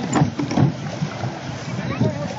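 Several people's voices talking and calling out over open water, with a steady background hiss.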